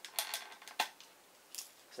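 Pocket knife blade scraping and clicking against the plastic case of a vintage smoke detector as the cover's retaining clips are pried loose: a short run of scrapes, then two sharp clicks.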